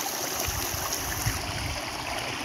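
Shallow river running steadily over rocks.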